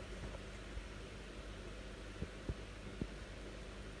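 A faint steady low hum, with a few soft knocks a little after halfway as a pet puma shifts its body and paws on a tiled floor.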